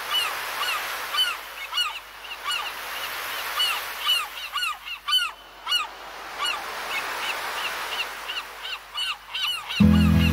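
Seagulls calling over and over, short arched cries about twice a second, over a steady wash of sea noise. Music comes in with a loud low note near the end.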